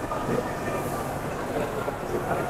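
Industrial textile sublimation printer (Flora TX-2000EP) running at speed: a steady mechanical running noise with no distinct strokes, mixed with a busy exhibition hall's crowd din.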